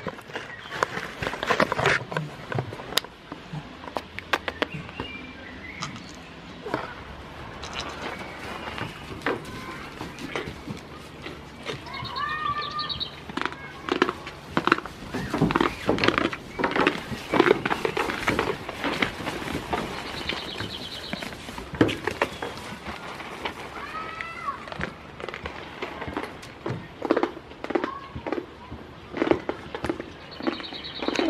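Goats eating from a hand and shuffling at a wooden barn doorway: irregular crunching, knocks and rustles throughout. A few short, high chirping calls come in about twelve seconds in, again around twenty and twenty-four seconds, and near the end.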